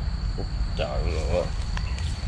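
A steady, high-pitched insect trill over a low rumble, with a short vocal sound about a second in.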